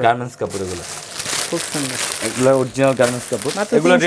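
Clear plastic garment packaging crinkling and rustling as a panjabi is handled and taken out of its bag, a dense crackly rustle lasting about two seconds from about half a second in.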